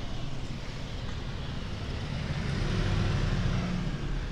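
Street traffic below an open window, with a motor vehicle passing that grows louder to a peak about three seconds in and then fades.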